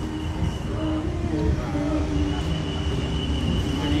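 Street traffic noise: motorbike and scooter engines running steadily nearby, a continuous low rumble with a faint steady high whine.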